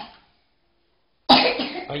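A person coughing loudly, starting suddenly just over a second in after about a second of silence.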